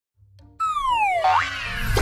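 Cartoon sound effect: a whistling glide falling in pitch, then a short rising glide, as light children's background music starts about half a second in.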